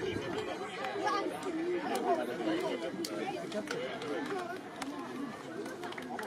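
Indistinct chatter of several men's voices talking over one another, with a few faint sharp clicks.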